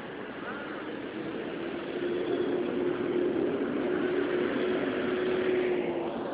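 Street noise with traffic: a steady rush of sound with a low, steady hum that grows louder about two seconds in, and voices in the background.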